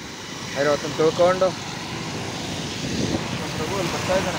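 Road traffic on a wet road: a steady hiss of tyres and engines that grows slowly louder toward the end.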